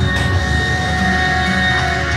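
Background music with long held notes over a continuous low bass.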